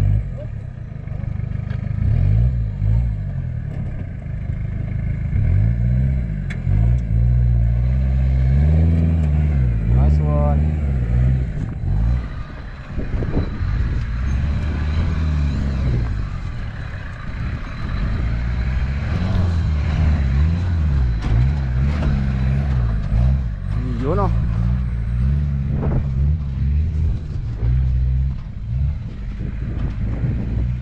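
Small 4x4's engine revving up and dropping back again and again as it crawls over steep dirt mounds and ruts under load.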